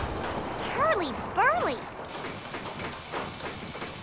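Two short cartoon-voice cries, each rising and then falling in pitch, over a steady din. In the second half the din becomes an even construction-site noise with faint ticking.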